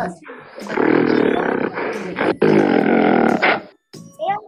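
Recorded wild animal roaring, played back over a video call: two long roars with a brief break between them.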